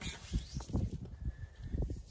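Cord being wrapped and pulled around wooden bipod poles by hand: soft, irregular rustles and light taps over a low rumble.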